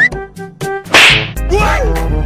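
A loud, sudden whip-crack snap about a second in, a comedy sound effect for the stretched rubber strap being let go, over jaunty background music. A wobbling, bending tone follows near the end.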